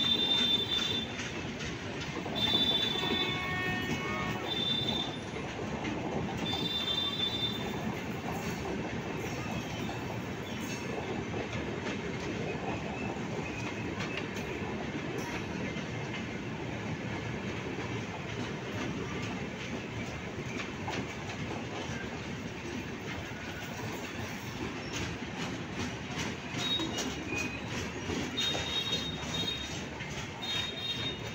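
Passenger train's LHB coaches rolling past, a steady rumble of wheels over rail joints as the train pulls out. High metallic wheel squeal cuts in several times, in the first seconds and around seven seconds in, and again near the end as the last coach goes by.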